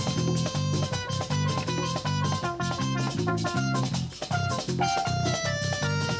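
Merengue band playing live with a steady beat of drums and bass. A synthesizer keyboard plays a stepping melodic run of held notes over it from about a second in.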